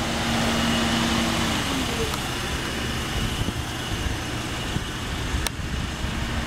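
Steady outdoor background noise with a low machine hum that dips slightly in pitch and stops about a second and a half in, then a single sharp click near the end.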